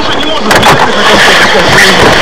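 Indistinct voices talking inside a moving car's cabin, over steady road and engine noise that gets louder about half a second in.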